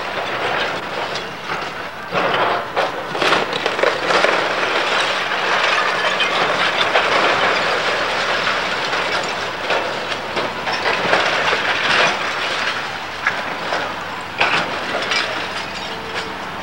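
Brick and clay roof tiles breaking and clattering down as a hydraulic excavator's grapple tears into a masonry wall: a continuous rattle of falling rubble, with louder crashes about two to four seconds in and again near the end.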